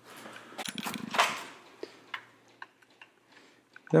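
Rustling and a brief scrape about a second in, then a few faint, scattered clicks of metal hand tools being handled in a tool chest drawer.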